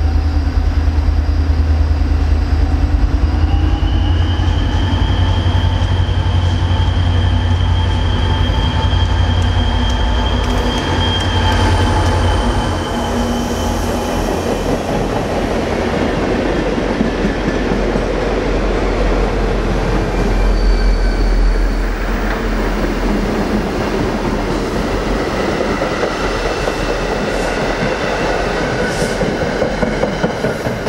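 A train passing close by at speed. A heavy low diesel locomotive rumble builds as it approaches, with a thin high tone held for several seconds. From about halfway on, the rumble gives way to a dense steady clatter of wheels over the rail joints as the cars go by.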